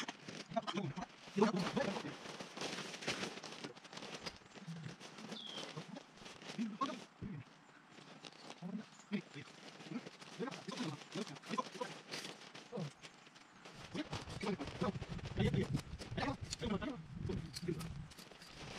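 Nylon tent fabric and a plastic tarp rustling and crinkling as a dome tent is unfolded and raised, with men's voices talking indistinctly. Both get louder near the end.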